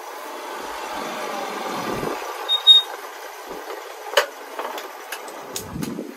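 Motor scooter riding up and coming to a stop: its engine grows louder to a peak about two seconds in, then falls away as it slows. There is a brief high squeak in the middle, and a few sharp clicks and knocks near the end as it is parked.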